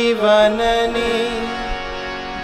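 A man's voice singing a Gujarati devotional hymn (kirtan), drawing out long held notes that bend slowly in pitch.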